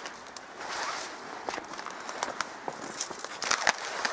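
Footsteps through dry, matted grass and fallen twigs, with irregular crackling and snapping of brittle stems underfoot, thickest near the end.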